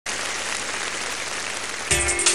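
Audience applauding steadily; the song's music comes in with a heavy beat just before the end.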